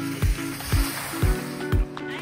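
Background music with a steady beat: a kick drum about twice a second under held chords.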